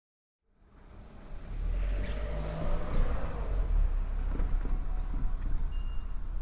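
Outdoor street sound fading in from silence: a steady low rumble of traffic under a broad hiss, swelling as a vehicle passes about two to three seconds in.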